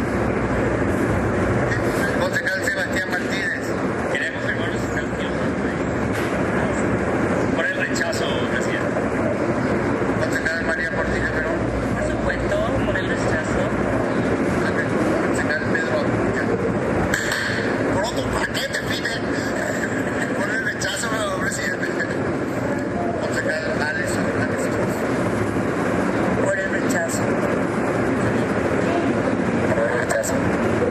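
Indistinct voices from a council chamber over a steady low rumble and hiss, as picked up by a recording made off a screen.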